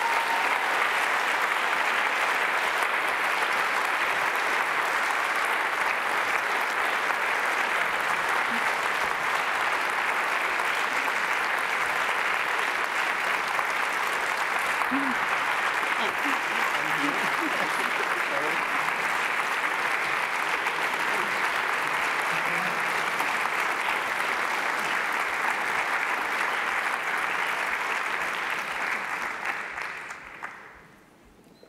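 Large audience applauding steadily, dying away near the end.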